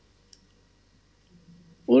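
A pause in a man's speech: quiet room tone with one faint, short click about a third of a second in, then his voice resumes near the end.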